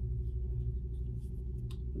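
Steady low hum of a gel-nail curing lamp running a 60-second cure, with a faint light tap near the end.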